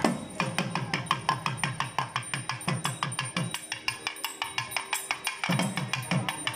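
A double-headed barrel drum beaten in a rapid, driving rhythm of sharp strokes, several a second, with metallic high accents over it. A steady held note sounds under the drumming for a couple of seconds around the middle.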